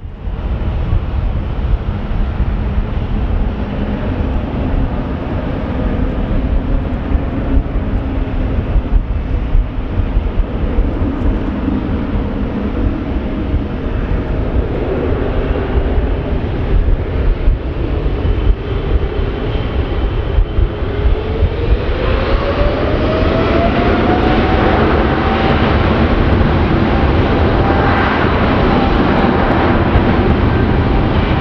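Jet engines of a Boeing 777-300ER (GE90-115B turbofans) running loud at takeoff power. About two-thirds of the way through, a whine rises in pitch and then holds high as the noise grows louder.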